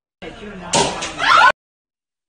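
Raised voices, with one sharp smack about three-quarters of a second in, followed by a rising cry; the sound cuts off abruptly.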